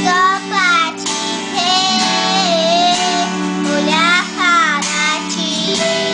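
A young boy singing a Portuguese worship song, drawing out long, bending notes over instrumental backing music.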